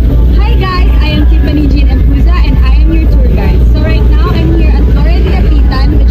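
A young woman talking, over a loud, steady low rumble.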